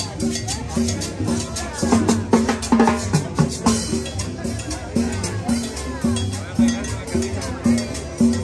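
A live street band playing upbeat dance music with a steady drum and percussion beat and repeated low pitched notes, with crowd voices beneath.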